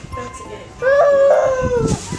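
A single long, high-pitched vocal cry lasting about a second, starting a little before the middle, holding level and then falling away at the end.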